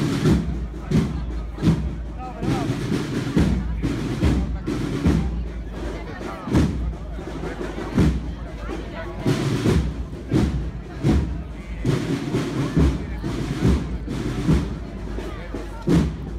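Drums beating a steady procession rhythm, a strong beat about every second and a half, over crowd chatter.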